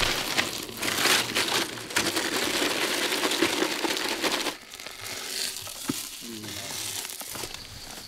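Crinkling rustle of a bundle of green leaves being handled and pushed into a hollow in a tree trunk; it stops abruptly about four and a half seconds in, and fainter rustling follows.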